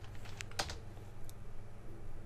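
A few faint, isolated computer keyboard keystrokes over a low steady hum.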